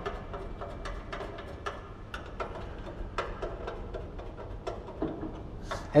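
Scattered light clicks and taps, a few a second and unevenly spaced, from hands working on a metal retail shelf and the display bracket as the display is secured with screws.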